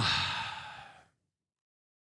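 A man's breathy sigh, trailing out of an 'um' and fading away about a second in.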